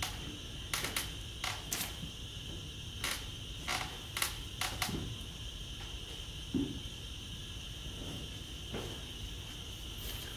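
Room tone with a steady high-pitched hiss, broken by a few scattered light clicks and rustles, mostly in the first half, from sheets of paper being handled.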